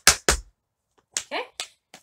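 Metal taps on tap shoes striking a wooden practice board in a quick, even run of about five taps a second. The run stops about half a second in, and two faint taps follow near the end.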